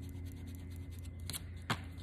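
An eraser rubbing on paper to lighten pencil shading on a sketch, then a pencil scratching across the paper, with two short clicks near the end.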